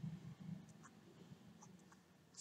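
Near silence with faint scratching and light ticks of a stylus writing on a drawing tablet, mostly in the first half-second.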